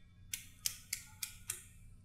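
A pen clicked repeatedly in the hands, about five sharp little clicks at roughly three a second.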